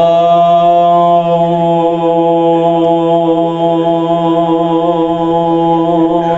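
A man's amplified voice holding one long chanted note at a steady pitch: the zakir's drawn-out melodic cry in the middle of his majlis recitation.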